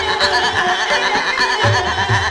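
Hindustani classical music in Raag Aiman (Yaman): a fast, wavering melodic line over steady held drone tones, with low resonant drum strokes near the end.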